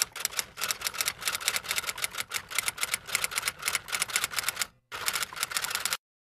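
Typewriter typing sound effect: a rapid run of key clacks, about six or seven a second, with a short break near the end.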